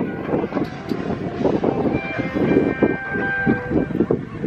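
Distant amplified band soundcheck from an outdoor amphitheater, carried across open ground as a muffled, heavy low-pitched wash with a few held notes above it.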